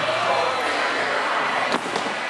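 A pair of dumbbells dropped onto a rubber gym floor, one sharp thud near the end, over a steady din of gym background noise.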